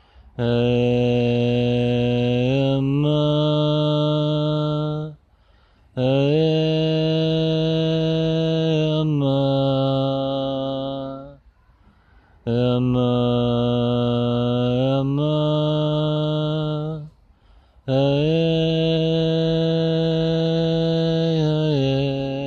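A man's voice chanting a mantra in four long, held tones with short pauses for breath between them. Each phrase moves between two notes partway through.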